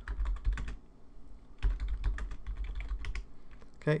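Computer keyboard typing: a quick run of keystrokes, a pause of under a second, then a second, longer run of keystrokes.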